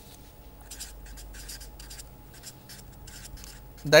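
Permanent marker writing on paper: a run of short, separate pen strokes as a line of text is written.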